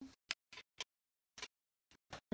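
A few faint, short clicks and taps from hands setting a plastic ink pad down on the table, with a near-silent gap in the middle.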